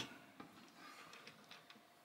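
Near silence: room tone with a few faint, light clicks, the clearest about half a second in, as small die-cast metal toy cars are set down on a wooden tabletop.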